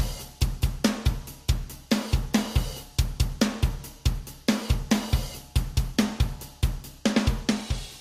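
A recorded drum kit playing a steady beat, run through multiband compression. Upward compression is being dialled in on the high-frequency band, which raises its quieter sounds.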